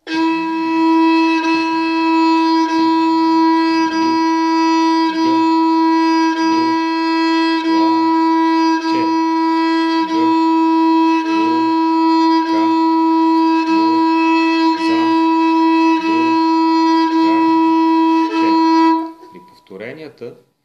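Bulgarian gadulka bowed steadily on one unchanging note in even quarter notes, with a bow change about every 1.3 seconds. A man's voice counts the beat along with it, two counts to each bow stroke. The playing stops shortly before the end.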